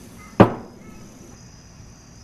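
A single sharp knock about half a second in, with a short decaying tail.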